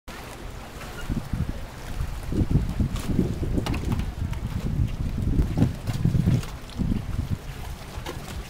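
Wind buffeting the camcorder's microphone in uneven low gusts, with a few light knocks among it.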